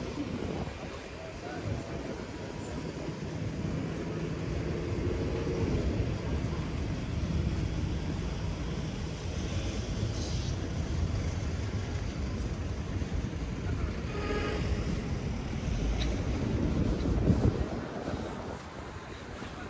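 City street ambience: a steady low rumble with scattered voices of passers-by, swelling a little just before the end.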